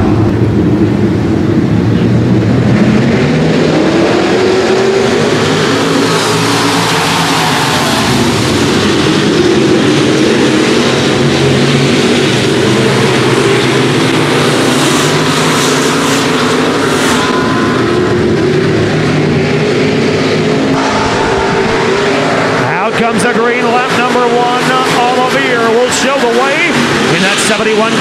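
A pack of dirt-track stock cars racing at full throttle, their engines revving, rising and falling in pitch as the field runs through the turns and down the straights.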